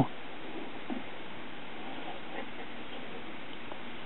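Quiet, steady background hiss with no distinct source, and a faint tick about a second in.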